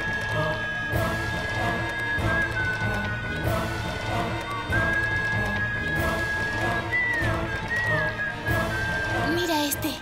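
Background music score: a long, high held melody line that bends near the end, over a steady rhythmic beat.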